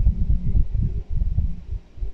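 Low, irregular rumbling background noise with no speech, uneven in level and dipping near the end.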